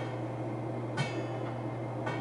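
A steady low hum, with one short sharp click about a second in.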